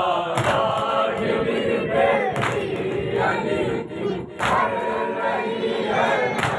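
A group of men's voices chanting a noha together, with chest-beating (matam) hand slaps struck in unison about every two seconds.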